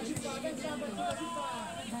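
Spectators' voices chattering and calling out, with no distinct words.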